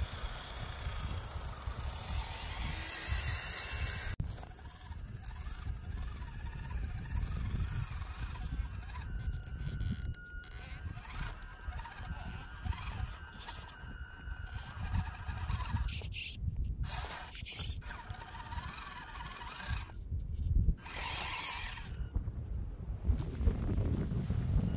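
Axial SCX24 micro crawler's small electric motor and gears whining, rising and falling in pitch, with its tyres scraping over rock. Wind rumbles on the microphone throughout, and the sound breaks off abruptly a few times.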